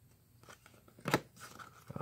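2019 Topps Holiday baseball cards being handled: faint rustling of cardstock as a card is slid off the stack, with one sharp card flick about halfway through.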